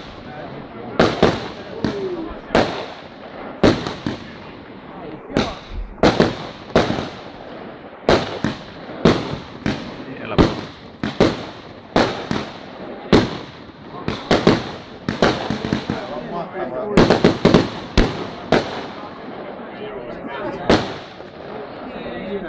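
Fireworks display: aerial shells bursting one after another, about one sharp bang a second, each followed by a long echoing tail. A rapid cluster of several bangs comes about three quarters of the way through.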